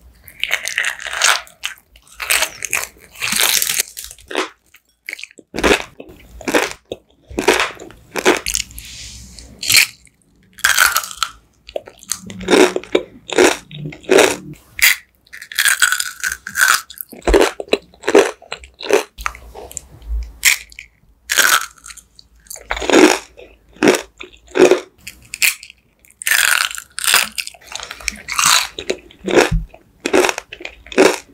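Close-miked mouth eating sounds: crisp bites and crunchy chewing, a steady run of short crunches at about one or two a second in an uneven rhythm.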